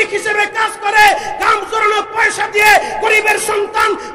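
A man preaching in a loud, shouting voice through a public-address system, with quick syllables and falling pitch at the ends of phrases.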